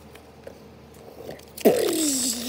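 Paper cutouts crinkling as a hand grabs them, starting suddenly near the end, together with a drawn-out vocal sound that drops steeply in pitch and then wavers low.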